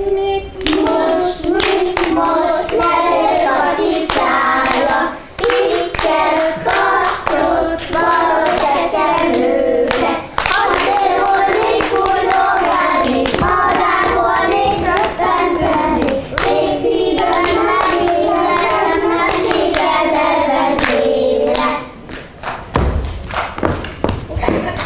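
A group of young children singing a song together while clapping their hands to the beat. The singing stops about two seconds before the end, leaving a few scattered claps and knocks.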